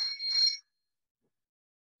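A short electronic alert chime: two quick, high ringing pulses in the first half second, an unwanted device notification that interrupts the talk.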